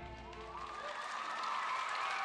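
Theatre audience applauding, with some cheering, as the last notes of the dance music fade out in the first half-second.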